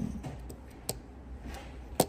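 Yamaha YTS-26 tenor saxophone keys being pressed and released, giving a few sharp clicks as the pads close on the tone holes, the clearest about a second in. The keywork is completely unregulated.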